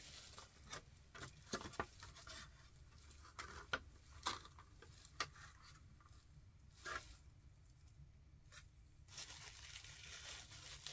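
Faint handling of plastic packaging as HeroClix miniatures are unpacked from a booster: scattered rustles, small tears and a few sharper clicks with quiet gaps between.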